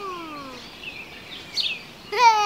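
A voice gliding down in pitch over about half a second, then faint high bird chirps.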